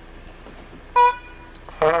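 Triple-belled trombone giving a short trial toot about a second in, then a louder, wavering note near the end.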